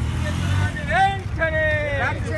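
Protest marchers shouting a slogan in loud, drawn-out calls, starting about a second in, over a low rumble of road traffic that is strongest near the start.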